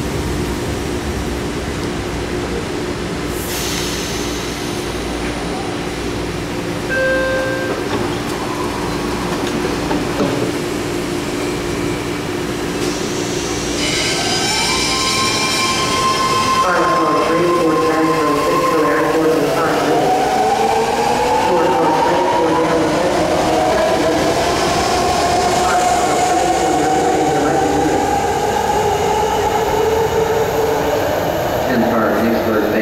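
BART train in the subway station, its motors humming steadily and then pulling away. There is a brief high squeal about halfway through, then from about 17 seconds on the traction motors give a whine in several tones that rises in pitch as the train picks up speed.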